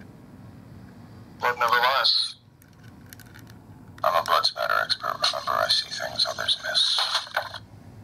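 Dexter talking keychain playing recorded voice lines through its tiny speaker: a short line about a second and a half in, then a longer one from about four seconds to near the end. The sound is thin and tinny.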